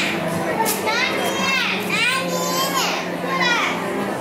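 Children's high-pitched, excited voices: several rising-and-falling calls and squeals over general crowd chatter in a large hall.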